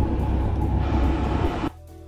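Background music with a steady low bass line. It cuts out briefly near the end.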